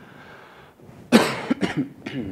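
A man coughing: one loud cough a little over a second in, then a quick run of three shorter coughs. It comes from a dry, irritated throat; he asks for water right after.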